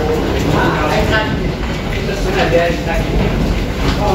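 Indistinct chatter of several passengers over a steady low rumble in an enclosed jet bridge.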